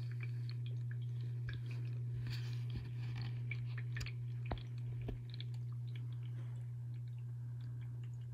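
Steady low hum of a terrarium water-feature pump, with many scattered small clicks and a few sharper knocks about halfway through.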